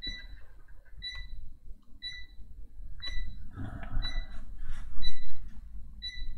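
Stylus scratching and tapping on a pen tablet during handwriting, over a short high-pitched tick that repeats about once a second.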